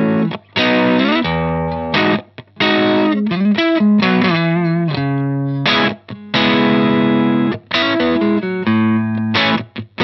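Electric guitar played through a VHT Special 6 Ultra, a 6-watt combo with a single 6V6 tube, driven from its Ultra input with the Ultra knob about three quarters up so the amp breaks up into light, natural overdrive. Ringing chords are cut off by short breaks between phrases, with a run of wavering, bent notes about four seconds in.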